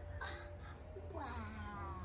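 A domestic cat's drawn-out meow, starting about a second in and falling in pitch, over faint background music.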